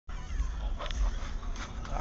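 Low, steady rumble of a vehicle heard from inside the cab, with a couple of faint, brief higher-pitched sounds about a second in and again near the end.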